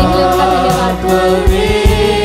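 Hindi Christian praise song: voices singing held notes over a band accompaniment, with drum hits.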